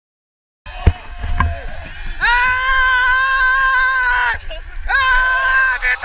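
A man yelling in celebration after a footballers' win: two long held shouts, the first about two seconds, the second about a second, after a sharp thump near the start, over a low rumble.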